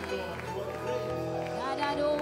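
Live worship music: an electronic keyboard and an electric guitar hold sustained chords while a voice sings or exhorts over them through the PA.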